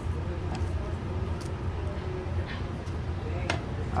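A steady low hum in the background, with a few faint clicks and taps as battered fried green beans are handled on the sushi mat and plate.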